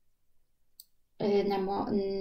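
A faint single click just under a second into a near-silent pause. Then a woman's voice begins a drawn-out hesitation sound held at one steady pitch.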